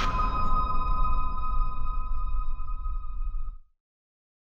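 Logo sting sound effect: a sustained ringing tone over a low rumble, slowly fading, then cutting off suddenly about three and a half seconds in.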